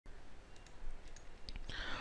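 A few faint clicks over low steady background noise, from a computer being operated as a PowerPoint slideshow is started.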